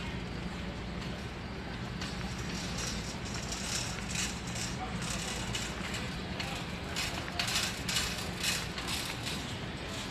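Background noise of a large warehouse store: a steady low hum with irregular rustling and rattling that grows busier in the second half.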